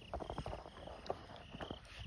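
Crickets chirping in a faint, rhythmic pulse, with a few soft knocks of footsteps while walking.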